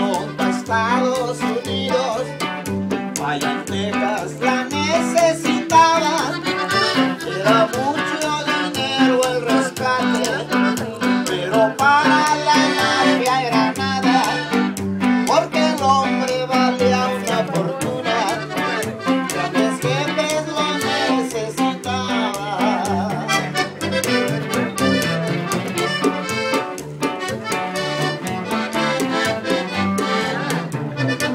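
Live norteño music: an accordion carries the melody over an upright bass and a guitar, the bass keeping a steady, even beat.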